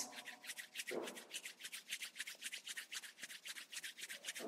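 Hands rubbing palm against palm briskly, a quick even swishing of about seven strokes a second, warming the palms.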